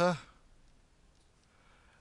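The end of a spoken word, then a stylus writing on a drawing tablet: a few faint clicks and a light scratch of the pen tip.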